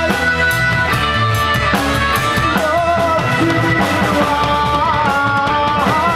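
Live rock band playing, with drums keeping a steady beat under guitar and a held melody line that bends in pitch every couple of seconds.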